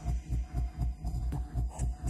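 Electronic dance music from a DJ set, stripped down to a steady, fast kick-drum and bass pulse, with only faint high percussion above it.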